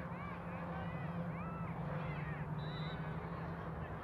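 Distant shouting voices across a playing field, with many short high calls overlapping, over a steady low hum. A brief, flat, high tone sounds once about two and a half seconds in.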